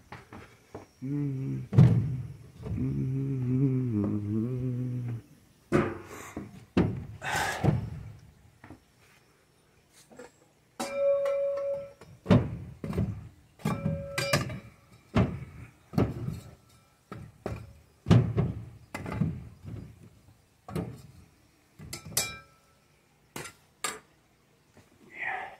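Background music for about the first five seconds, then a string of sharp knocks and pops from a wood fire in a fireplace being stirred with a poker, about one or two a second.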